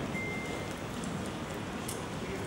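Steady room noise of a large hall with a seated audience, with a brief faint high tone near the start.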